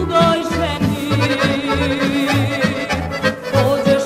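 Serbian narodna folk ensemble playing an instrumental passage, an accordion carrying the melody over a steady bass-and-chord beat.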